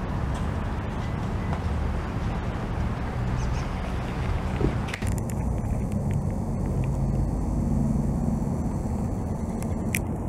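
Road traffic noise: a steady low rumble with hiss over it, the hiss dropping away about halfway through.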